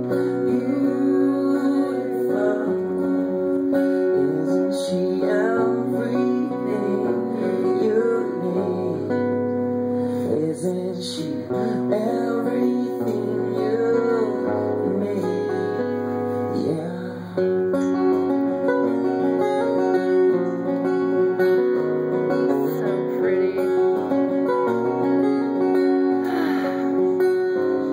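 Live acoustic guitar strummed together with an electric guitar playing a slow song, with a man's voice singing over parts of it.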